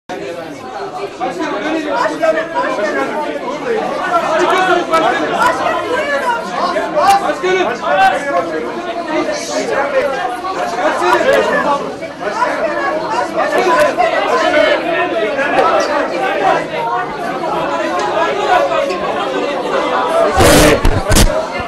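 Crowd chatter in a packed room: many voices talking over one another, with men repeatedly calling out "Başkan!" to get the candidate to look their way, as press photographers do.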